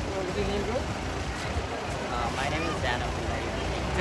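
Faint voices of people talking, over a steady low rumble.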